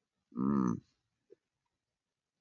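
A man's short wordless voiced sound, like a thinking "hmm", about half a second long, rising and then falling in pitch.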